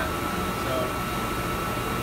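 Steady whirring hum of a dust collector and the 40 hp rotary phase converter that powers it, both running, with a thin steady whine over the top. The level holds even: the converter is carrying the load smoothly.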